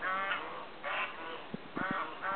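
White domestic geese honking, three calls about a second apart.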